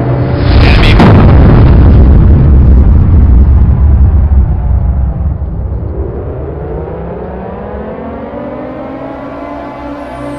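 Heavy explosion sound effect: a sudden blast about half a second in, then a long deep rumble that fades away over several seconds. In the last few seconds a layered tone swells in, slowly rising in pitch.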